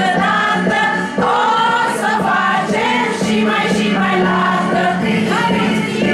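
A group of adult voices, women's and men's, singing together in unison as a table chorus, loud and continuous.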